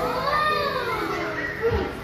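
Young children's voices calling out and chattering excitedly together, high-pitched, with one long rising-and-falling call in the first second.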